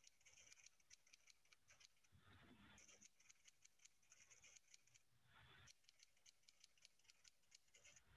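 Faint typewriter key clicks, rapid and even at about ten a second, in three runs. Each run is separated by a short rush of noise, about two seconds in and again a little past five seconds.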